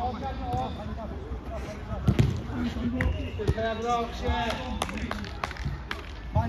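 A football being kicked on a five-a-side pitch: a few sharp thuds, the loudest about two seconds in, amid men's voices on the pitch and a laugh near the end.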